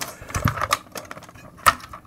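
Irregular clicks and knocks of hard plastic and metal objects being handled on a workbench as a Proxxon rotary tool is picked up, with one sharper click near the end.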